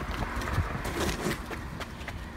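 A B.O.B jogging stroller pushed at a run over tarmac: wheels rolling and the runner's foot strikes, heard as a low rumble with repeated light knocks.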